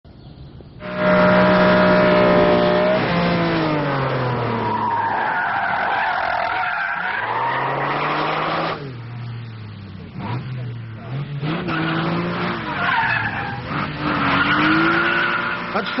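Ferrari sports car's engine revving hard, its pitch rising and falling, while its tyres squeal as the car slides sideways through corners. It starts suddenly about a second in and dips briefly about halfway through before the engine and tyres pick up again.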